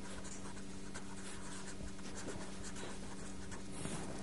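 Felt-tip marker writing on paper: faint scratchy strokes as a word is written out, over a steady low hum.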